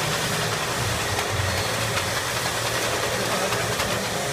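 Seal Pack SP-3503B powder tray filling and sealing machine running: a steady low mechanical hum with occasional faint ticks.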